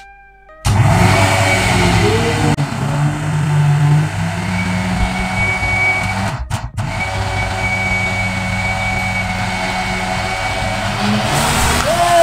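Bajaj electric mixer grinder switching on suddenly and running at full speed with a steady hum, churning a jar of Eno and liquid hand wash into foam that overflows the jar. The sound drops out briefly about six and a half seconds in, then carries on.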